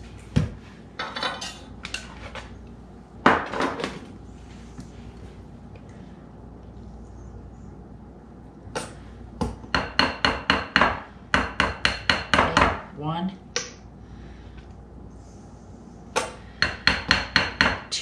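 Plastic measuring spoon tapping and scraping against a glass bowl while mustard is spooned in: a single sharp knock, then quick runs of light ringing taps, several a second.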